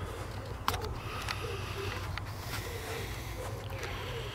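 Outdoor background: a steady low rumble with a few faint clicks.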